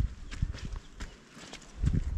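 Footsteps on a dry dirt trail: a run of dull steps with light scuffing, louder toward the end.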